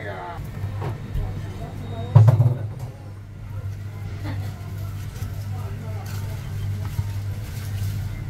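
A blade strikes a thick wooden chopping block with one heavy knock about two seconds in, followed by a few lighter taps of a knife working through meat on the block, over a steady low hum like traffic or an engine running.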